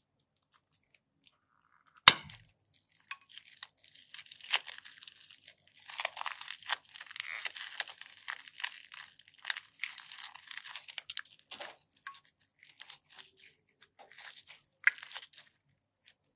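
Thin plastic piping bag crinkling and crackling as a lump of slime studded with polymer-clay slices is squeezed and peeled out of it, with crunchy, sticky sounds from the slime. A single sharp click comes about two seconds in, and the crinkling thins to scattered clicks near the end.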